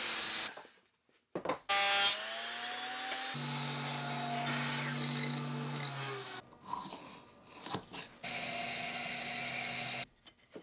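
Woodshop power saws in a string of short cuts. A miter saw cut ends about half a second in. Then a saw motor spins up with a rising whine and runs with a steady hum, and near the end a table saw runs through a cut.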